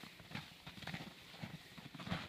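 Footsteps in snow, irregular steps a few tenths of a second apart, with the rustle of a small evergreen tree dragged over the snow.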